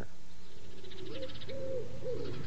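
A dove cooing: low, soft hooting notes that swell and fall, beginning about halfway in.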